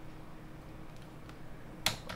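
A computer keystroke: one sharp click near the end, with a fainter tick a little before it, over a faint steady hum.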